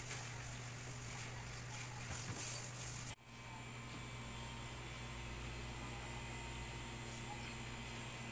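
Steady low hum of an electric oven's fan running, with faint steady tones over it; the sound cuts out abruptly for an instant about three seconds in.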